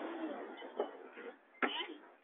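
Speech only: conversational voices trailing off, then a short burst of voice about a second and a half in.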